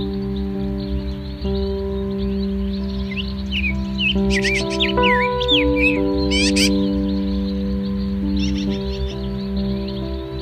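Calm ambient music of long held tones, with lovebirds chirping shrilly over it in a burst of quick high calls from about three to seven seconds in, and a few more near the end.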